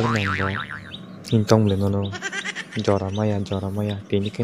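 A cartoon character's voice, its pitch wavering up and down at the start, then speaking in short phrases.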